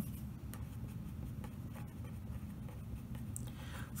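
A marker writing a word on paper: faint, soft scratchy strokes over a low steady room hum.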